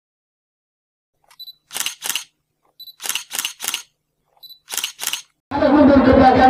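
Camera shutter sound effect in three bursts: each a short faint beep followed by quick shutter clicks, two, then three, then two. About half a second before the end, loud continuous sound with steady tones cuts in.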